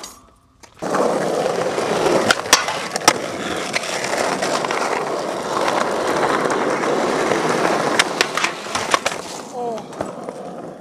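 Skateboard wheels rolling over rough asphalt: a steady rolling rumble that starts about a second in and runs until near the end, broken by several sharp clicks and knocks.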